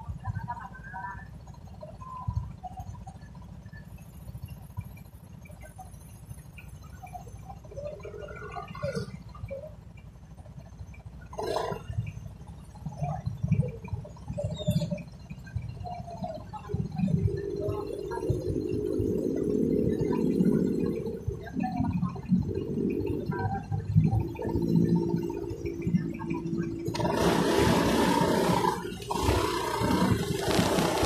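Street traffic with motorcycle engines running under a steady low rumble. It grows louder about halfway through, and a loud rush of noise comes in over the last few seconds.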